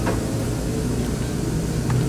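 A steady low background hum, with a faint click near the start and another near the end.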